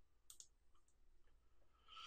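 Near silence with a faint click or two, like a computer mouse being clicked, about a third of a second in.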